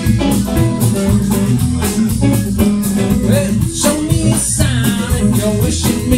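Live band playing an instrumental passage between vocal lines: guitar over plucked upright bass, with a steady drum beat.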